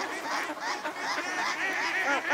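A flock of mallards quacking, many loud calls overlapping one another without a break.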